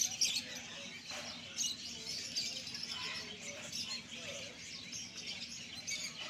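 Many small caged birds chirping and twittering at once, a dense, continuous chorus of short high calls.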